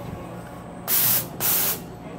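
Foltex automatic towel folding machine firing two short hissing blasts of compressed air about half a second apart as it folds a towel, over the steady hum of its running conveyor.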